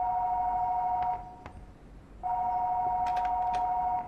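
House telephone ringing with an electronic two-tone ring: one ring ends about a second in and another starts about a second later, each ring about two seconds long.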